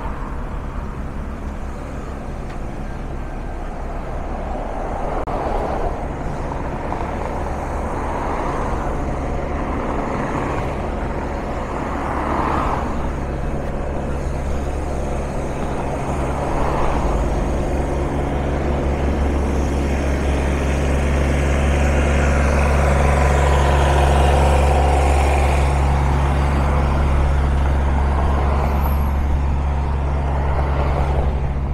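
City street traffic with a heavy vehicle's engine running close by, a steady low drone. It grows louder in the second half and is loudest about two-thirds of the way through.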